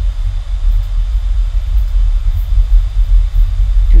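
A steady low rumble with a faint hiss above it, the recording's background noise, with no one speaking.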